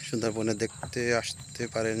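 A steady, high-pitched drone of insects calling from the mangrove forest, heard under a man's voice talking.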